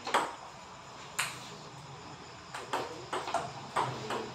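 Table tennis ball clicking off the paddles and table in a rally. There are two sharp hits about a second apart, then a quicker run of clicks from about two and a half seconds in.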